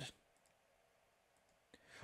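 Near silence with a few faint clicks from a computer mouse as a web page is scrolled.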